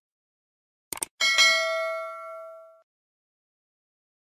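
Subscribe-button sound effects: a quick double mouse click about a second in, followed at once by a bright notification-bell ding that rings out and fades over about a second and a half.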